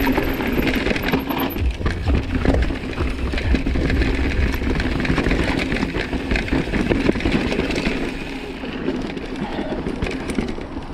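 Intense Recluse full-suspension mountain bike riding fast down a rocky trail: tyres crunching over loose stones, with constant rattling and knocking from the bike over the bumps and wind rumbling on the action camera's microphone. The rattling eases a little about eight seconds in as the trail smooths out.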